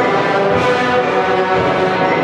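Two combined symphony orchestras playing loud, sustained chords, with the brass prominent.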